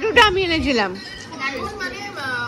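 Several people's voices talking and exclaiming over one another, with one loud raised voice in about the first half second and then quieter overlapping chatter.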